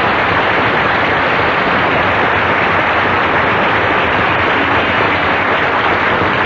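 Audience applauding steadily at full volume at the close of a song.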